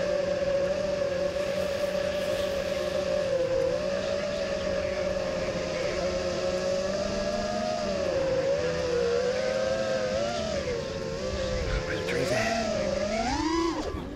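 Eachine Wizard X220 FPV racing quadcopter's motors and 5045 propellers whining in flight at a fairly steady pitch that sags and swells with throttle. Near the end the pitch climbs sharply as the quad is punched into a roll.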